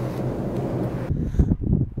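Wind buffeting the microphone outdoors: a steady rushing noise that turns into deep, low rumbling gusts about halfway through.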